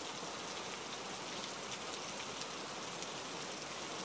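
Steady rainfall, an even hiss of rain that keeps up without change.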